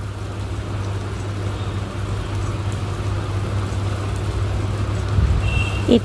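Steady low rumble and hiss of onion masala with ground spices cooking in a kadai over the stove.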